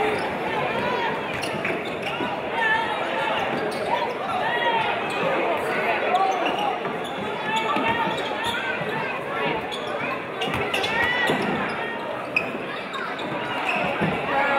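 A basketball being dribbled and bouncing on a hardwood gym floor during play, with spectators talking throughout, echoing in a large gymnasium. One sharper impact stands out near the end.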